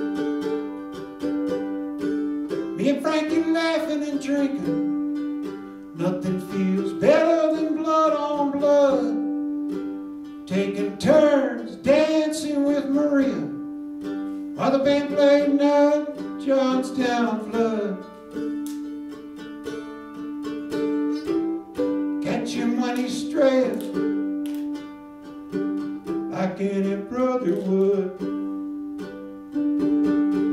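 Ukulele played live in a steady instrumental passage: a held ringing chord under a bending melody line that comes in phrases of two to three seconds, with short pauses between.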